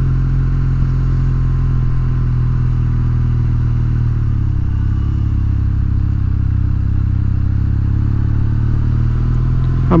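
Kawasaki W800's air-cooled parallel-twin engine running steadily at low town speed, its note dipping slightly about halfway through.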